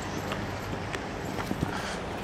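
Footsteps on pavement: a few irregular, faint clicks of shoes over a steady background hiss of street ambience.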